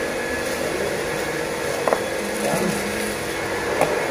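Steady background machine noise, with two short sharp clicks about two seconds apart as a screwdriver works at a car's door trim panel.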